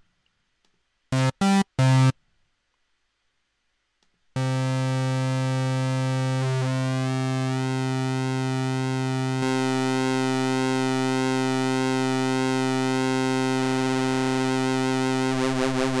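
Subtractor software synthesizer in Propellerhead Reason playing a sawtooth patch with phase offset modulation: three short notes about a second in, then a long held note from about four seconds in. Its overtones slowly shift and weave, giving a thick, supersaw-like sound, and the note starts to pulse slightly near the end.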